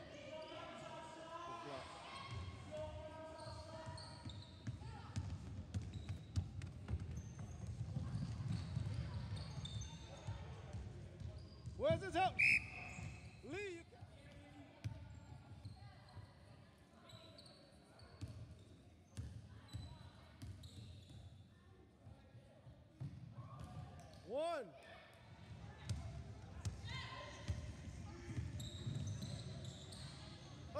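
Basketball being dribbled on a hardwood sports-hall floor during a game, with players' shoes squeaking and young voices calling out, all echoing in the hall. The sharpest squeaks come about twelve seconds in and again near twenty-five seconds.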